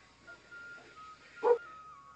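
A single short animal yelp about one and a half seconds in, over a faint, thin, steady high-pitched tone.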